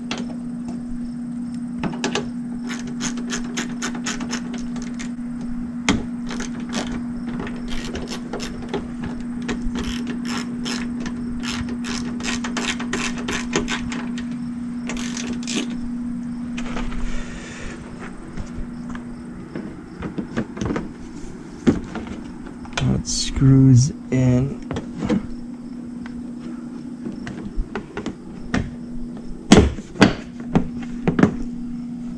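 Quick runs of light clicks and ticks as the truck's headlight and front-end trim pieces are pushed and clipped back into place by hand, over a steady low hum.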